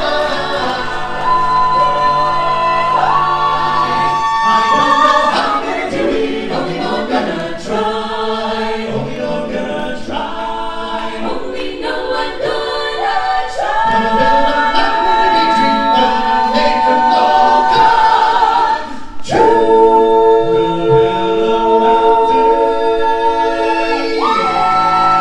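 A mixed men's and women's a cappella vocal group singing in close harmony through handheld microphones and stage speakers, with no instruments. The chords are long and held, with a short break about three-quarters of the way through before a final long chord.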